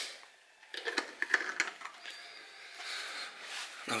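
Faint handling noise in a quiet room: a few small scattered clicks and a soft rustle.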